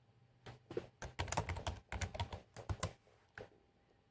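Typing on a laptop keyboard: a quick run of keystrokes starting about half a second in and lasting about two and a half seconds, then one last single tap.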